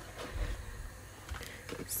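A whole cooked lobster being slid out of its plastic packaging sleeve onto a wooden cutting board: faint rustling and sliding, with a few soft knocks as it is set down.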